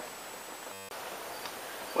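Quiet background hiss with a brief buzzing glitch just under a second in, at a splice between two recordings, followed by faint outdoor ambience.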